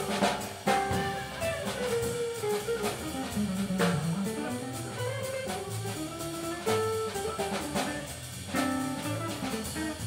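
Live jazz combo playing an instrumental passage: guitar, upright bass and drum kit with busy cymbals, a melodic line moving up and down over a walking bass, with no singing.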